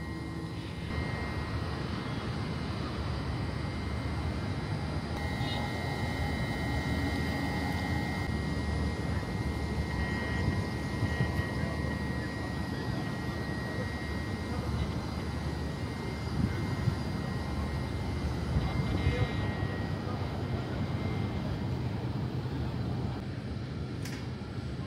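Steady droning hum of an electric multiple-unit train standing at the platform, with a faint steady high whine over it.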